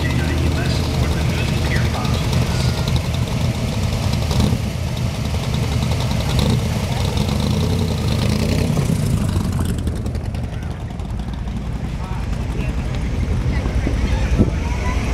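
Shelby Cobra–style roadster's engine rumbling low and steady through its side exhaust pipes as it rolls slowly past. The rumble fades about ten seconds in as the car moves on, under voices from the crowd.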